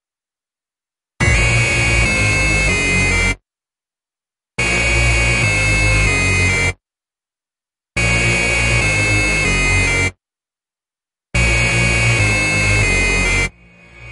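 Hard dance track with the full mix cut into blocks of about two seconds, each followed by about a second of complete silence, four times over. Near the end it drops low and swells back up.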